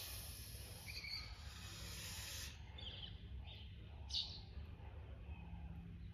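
Birds chirping: short, falling calls every second or so, over a steady low outdoor rumble, with a high hiss for the first couple of seconds.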